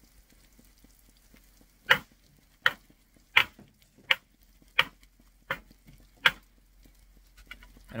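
Metal spatula striking a pan of frying food on a camp stove, seven sharp taps about two-thirds of a second apart as the food is chopped and turned, over a faint sizzle.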